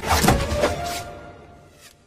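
Action-film soundtrack: score music with a loud, sudden whoosh of sound effects in the first second, then fading away.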